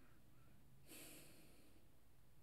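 Near silence: room tone, with one faint breath out through the nose about a second in.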